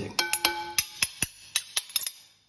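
Metal spoons clinking against a ceramic salad bowl while tossing a salad: a quick series of sharp clinks, the first ones leaving the bowl ringing for about half a second.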